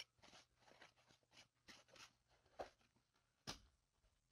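Near silence with faint rustling and soft clicks of a tarot deck being shuffled by hand, with two sharper card snaps past halfway and near the end.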